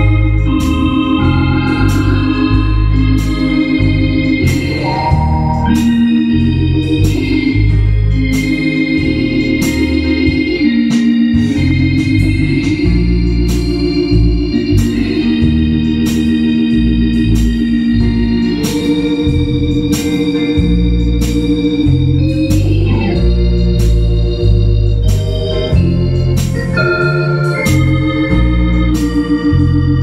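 Two-manual organ with a Hammond-style tone playing a gospel song: sustained chords shifting over a pulsing bass line, with a steady ticking beat.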